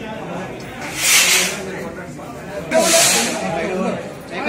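Murmur of crowd voices with two short, loud hisses, the first about a second in and the second near three seconds.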